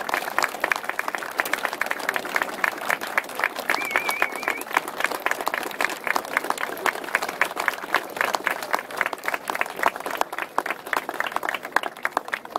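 A small crowd applauding, with individual hand claps heard distinctly in a dense, irregular patter.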